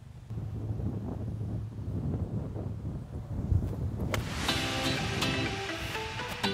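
Low wind rumble on the microphone, then background acoustic guitar music comes in about four and a half seconds in, just after a single sharp click.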